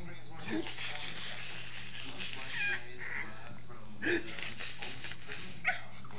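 Baby's quick breathy panting in two runs of short puffs, with a couple of faint high squeaks.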